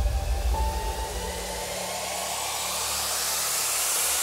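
An edited intro sound effect: a rushing noise riser that swells steadily louder and higher, over a deep rumble that dies away in the first two seconds, cutting off abruptly at the end.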